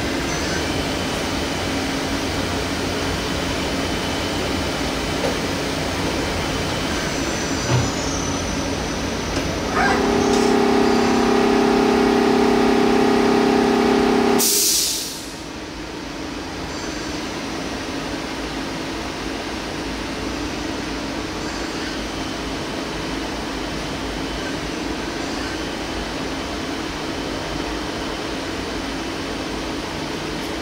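Doosan Puma 2600 CNC lathe running with a steady machine hum. About ten seconds in, a louder, pitched hum joins for four or five seconds and stops with a short hiss.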